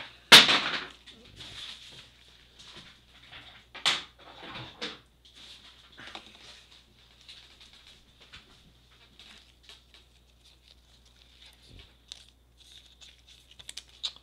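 Trading cards being slid into plastic card sleeves: a run of short rustles and slides, loudest just after the start and again about four seconds in, then quieter scattered rustling.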